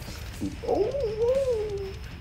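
A cat meowing: one drawn-out, wavering meow that starts about half a second in and glides up and down for over a second, over background music.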